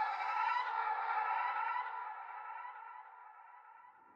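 Outro sound-effect sting: a sustained, slightly wavering tone with many overtones, echoing like a siren, that fades slowly away over a few seconds.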